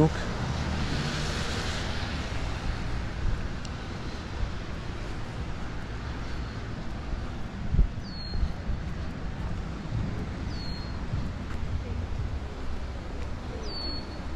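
Wind on the microphone with a car's tyres hissing past on the wet road in the first couple of seconds. A bird gives three short falling chirps in the second half.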